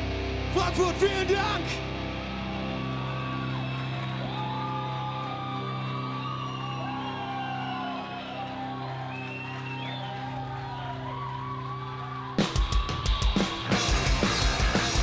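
Live rock band: electric guitars hold a droning, ringing chord with sliding feedback tones, with a short burst of drum hits and a shout about a second in. Near the end the drums and full band come crashing back in at full volume.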